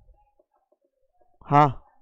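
A man's single short spoken "haan" about one and a half seconds in, after a stretch of near silence.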